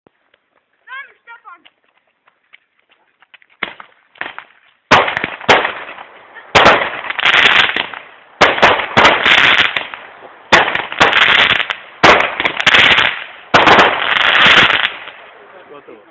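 A consumer firework battery (cake), the "Alien Star", firing its shots. It starts with a few small pops, then from about five seconds in gives six loud bursts over ten seconds, each a sharp crack followed by about a second of crackling noise.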